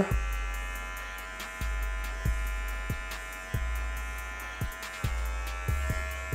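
Dingling electric hair clipper running with a steady buzz while its blade cuts short hair in a fade.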